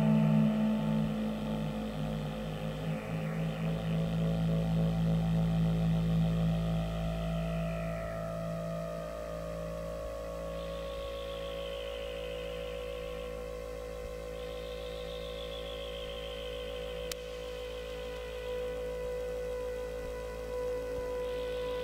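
Live ambient drone music from hardware synthesizers with knobs being turned. Strong low sustained drones fade away over the first half, leaving a quieter held tone under slow, downward-gliding higher tones, with a single brief click near the end.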